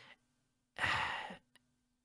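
A single breathy, sigh-like "uh" of hesitation from a speaking voice, about a second in, with near silence before and after.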